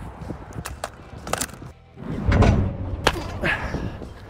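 Baseball bat striking balls fed by a pitching machine in a batting cage: several sharp cracks, two close together about a second and a half in and another about three seconds in. About halfway through there is a dull low thump and rumble, the loudest sound here.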